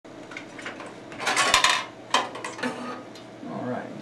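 Clattering and knocking from a drive-bay blanking cover being worked out of the front bays of a steel computer case, freeing a slot for a new drive. The loudest rattle comes about a second and a half in, with another sharp knock just after two seconds.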